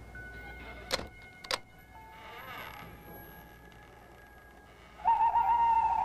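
Eerie background music with faint held tones, two sharp knocks about half a second apart, then a loud drawn-out owl hoot near the end.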